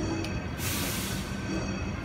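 Music playing over a steady street rumble, with a short loud hiss just after half a second in.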